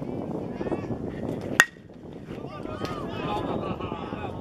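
A metal baseball bat hits a pitched ball about one and a half seconds in: a single sharp ping with a short ring. Spectators' voices can be heard around it.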